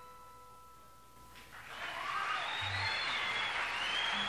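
A final electric guitar chord rings out and fades. About a second and a half in, the audience breaks into applause and cheering that grows louder.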